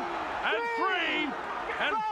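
A man's voice speaking over a steady background hiss of arena crowd noise.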